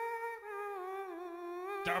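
A voice humming a slow line of long held notes that step gradually lower in pitch.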